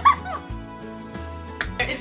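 A woman's short, high laugh right at the start, then soft background music with held low notes.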